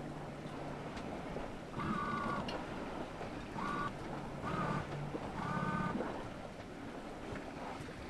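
Wind on the microphone and water rushing along the hull of a sailboat under sail, with a few short pitched sounds over it.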